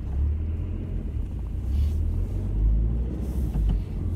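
Steady low rumble of a moving van's engine and road noise, heard from inside the cabin.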